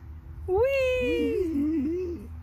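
A person's voice giving one long, high, drawn-out call, about half a second in, slowly falling in pitch. A lower, wavering voice runs under it and after it.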